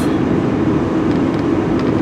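Steady road and engine noise inside a moving car's cabin, a low, even rumble.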